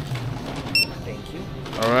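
Handheld barcode scanner giving one short, high beep a little under a second in as it reads the order barcode on a phone screen, the sign of a successful scan.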